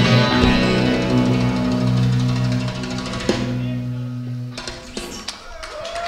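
A live rock band's closing chord, with electric and acoustic guitars, ringing out while the drummer plays a roll on the drums. The chord fades away about four and a half seconds in, and a few sharp clicks follow.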